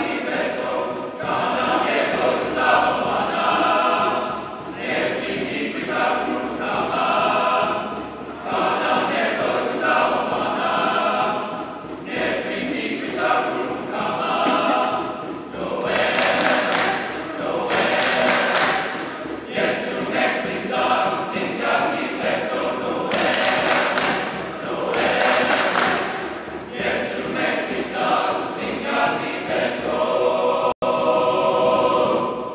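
A large mixed choir of men's and women's voices singing in parts, in phrases that swell and ease every few seconds, with sharp sung consonants standing out now and then.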